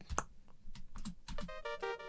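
Several clicks of computer keys, then about one and a half seconds in a synthesizer part starts playing back: several held notes whose upper tones pulse quickly.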